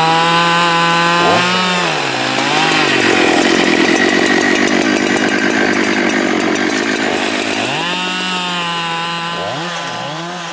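Husqvarna 572XP two-stroke chainsaw running at high revs, its pitch dipping and wavering as it bites into a log, then cutting under load for several seconds. It comes back up to a steady full-throttle note out of the cut, and near the end the revs rise and fall a few times as the throttle is worked.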